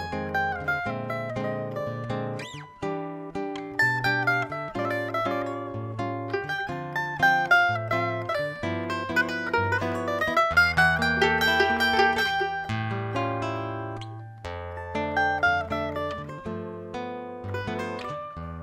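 A duo of a small mandolin-like plucked-string instrument and a nylon-string classical guitar playing live. Quick melodic runs ride over the guitar's bass notes and chords.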